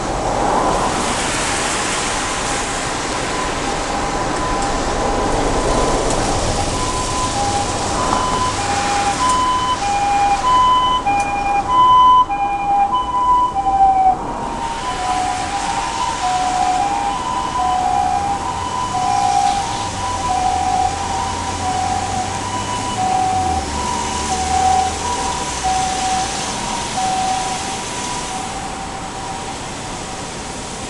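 Japanese ambulance's two-tone hi-lo siren alternating between two notes, growing louder to a peak about halfway through, then dropping slightly in pitch as it passes and fading away. Steady road traffic runs underneath.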